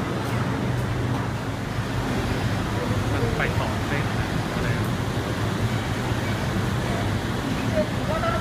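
Passenger van engine running steadily, a low hum as the van pulls up, under the chatter of a waiting crowd.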